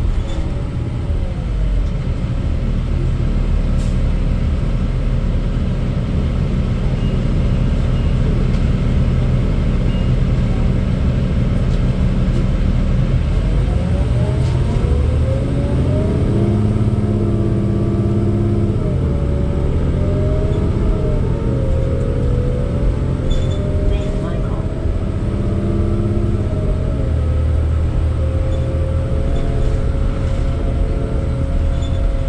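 Interior of a 2008 New Flyer D40LFR city bus under way: its Cummins ISL diesel and Allison B400R automatic transmission running, with road and tyre rumble underneath. From about halfway through, the drivetrain's pitch rises and falls slowly as the bus changes speed.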